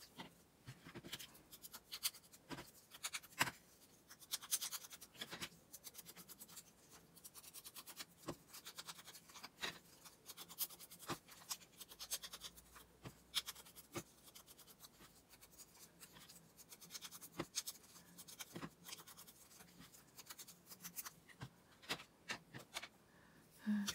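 Faint scratching, rubbing and irregular light taps of hands handling small pieces of paper and a small tool.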